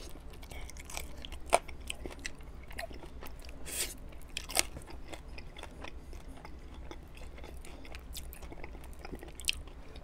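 Close-miked chewing and biting of sauce-covered buffalo chicken wings, with many short mouth clicks. The two loudest clicks come about a second and a half in and at about four and a half seconds.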